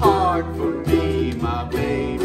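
A small group of ukuleles strumming chords together over a steady low bass line.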